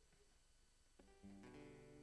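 Near silence, then about a second in a faint guitar chord is strummed and left ringing.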